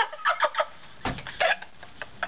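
Two young women laughing in short, choppy bursts that thin out towards the end.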